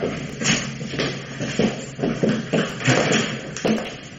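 Footsteps of several people walking, an uneven run of short steps, two to four a second, in a radio-play sound effect.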